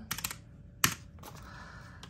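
Keys of a black mechanical calculator clicking as numbers are punched in: a quick run of clicks at the start, then one sharper click just under a second in.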